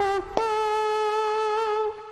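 A mouth trumpet, a voice buzzing through the lips to imitate a trumpet, playing a short jingle. A brief note dips at its end, then a long held note with a slight waver stops just before the end.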